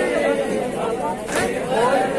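Several men chanting an Urdu noha (mourning lament) together through a microphone, voices rising and falling in a slow melodic line. A single sharp slap of chest-beating (matam) lands about a second and a half in, part of a slow, even beat.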